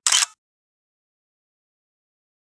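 A short, loud, hiss-like burst lasting about a third of a second, cut off abruptly into dead silence.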